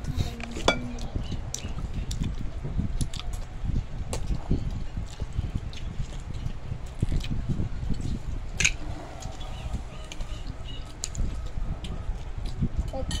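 Young children eating with their hands: chewing and mouth noises with scattered light clicks and clinks of plates, over a steady low rumble.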